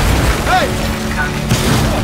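Deep booming rumble of a hard-struck football smashing into stadium seating, with a sharp crack about a second and a half in. Dramatic music plays underneath, and a man shouts "Hey!" about half a second in.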